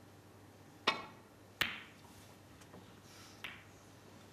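Snooker shot: the cue tip strikes the cue ball with a sharp click about a second in, the cue ball clicks into an object ball under a second later, and a fainter knock of a ball follows near the end.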